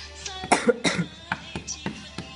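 A person's voice in two short, sudden bursts about a third of a second apart, followed by a few light clicks over faint background music.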